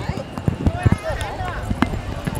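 Voices talking, with irregular short knocks and clicks scattered through.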